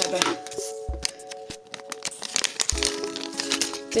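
Background music with steady held tones, over the crackle and crinkle of a cut-open plastic LEGO minifigure blind bag being handled as the paper checklist is drawn out of it, with a few low thuds.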